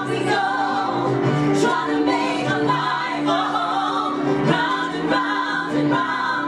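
Three women singing a musical-theatre song together in harmony, with held notes and steady phrasing.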